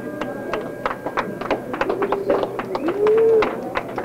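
Scattered handclaps from a small club audience at the end of a song, with a few short calls from the crowd; the loudest call comes about three seconds in.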